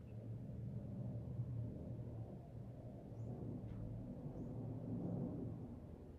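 Quiet low background hum of room tone, steady throughout, with no speech.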